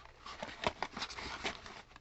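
Small cardboard product boxes being lifted, shuffled and set down in a storage bin: a run of irregular light knocks and taps, the sharpest a little under a second in.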